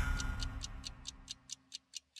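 Ending of a TV programme's title theme: the music dies away into a run of clock-like ticks, about four to five a second, growing fainter.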